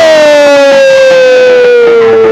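A singer holds one long, loud note that slides slowly down in pitch, over faint musical accompaniment.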